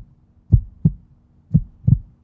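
Heartbeat sound effect: two double thumps (lub-dub), about one a second, over a faint steady low hum.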